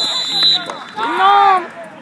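A referee's whistle blast, a steady high tone that stops about half a second in, followed about a second in by a loud, drawn-out shout from a man.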